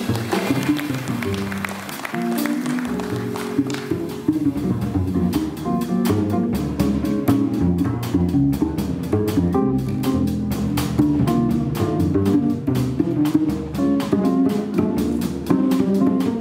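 Small jazz group playing: plucked upright double bass notes under electric guitar chords, with quick even cymbal ticks from the drums joining about six seconds in.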